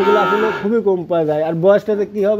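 A calf moos once, a short call lasting under a second at the start, followed by a man talking.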